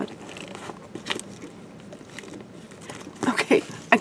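Handling noise from a red crab-shaped purse, with a few small clicks from its gold metal frame clasp as it is worked at and stays shut.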